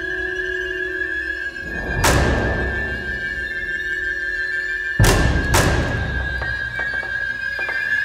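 Background music with long held notes and a few percussion hits, one about two seconds in and two close together about five seconds in.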